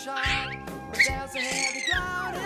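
A five-month-old baby squealing: a short squeal near the start, a sharp brief one about halfway, and a longer high squeal that falls in pitch near the end, over background pop music.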